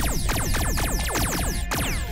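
Rapid-fire cartoon laser-blaster zaps, a quick string of sharply falling 'pew' shots about four to five a second, over electronic background music.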